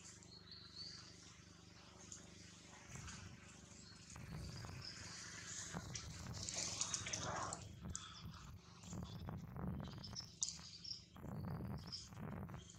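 Faint outdoor ambience with a few short, high chirps; from about four seconds in a low rumble and crackling rustle grow louder and run on, fitting the macaques moving through dry leaves.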